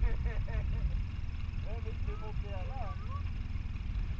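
Polaris RZR side-by-side's engine idling at a standstill, a steady low rumble, while the machine waits for river water to drain out of it.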